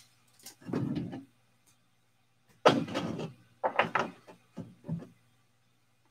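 Trading cards and packs being handled on a tabletop: a few separate knocks and rustles, the sharpest about halfway through.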